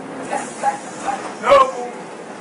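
A woman's voice giving a string of short, high-pitched yelping calls about half a second apart. The loudest comes about one and a half seconds in, sliding down in pitch, with a knock at its start.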